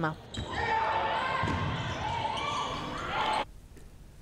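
Live sound of an indoor basketball game: a ball bouncing on the court amid players' and spectators' voices echoing in the sports hall. It cuts off suddenly about three and a half seconds in.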